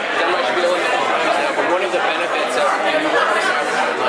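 Steady chatter of many people talking at once, overlapping conversations with no one voice standing out.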